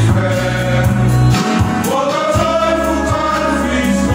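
Small male choir singing a hymn, accompanied by two strummed acoustic guitars, with a new long note taken up about two seconds in.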